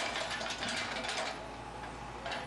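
A Case excavator demolishing a masonry building: its engine hums steadily under a dense, continuous clatter and crunch of breaking rubble as the bucket works the wall.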